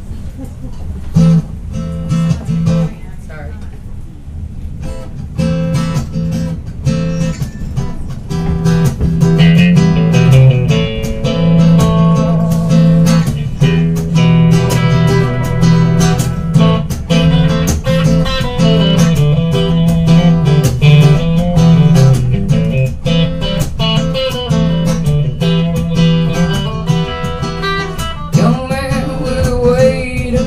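Acoustic guitar and electric guitar playing a blues song's instrumental introduction. It starts quiet and sparse and fills out and grows louder about eight seconds in.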